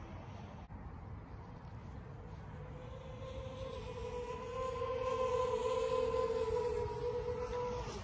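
Quadcopter drone flying overhead, its propellers giving one steady buzzing hum that fades in a couple of seconds in, grows louder and cuts off suddenly near the end.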